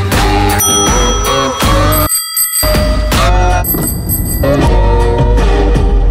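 A bicycle bell rung three times, each a clear ringing that holds for about a second, over background music.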